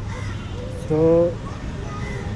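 A man's voice drawing out a single "so", over a steady low background hum and hiss.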